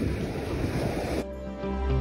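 Wind and surf noise, cut off abruptly a little over a second in by music with steady held notes.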